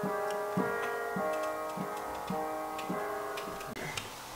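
Piano played in repeated sustained chords at an even pulse, a new chord struck about every 0.6 s. The playing cuts off abruptly near the end.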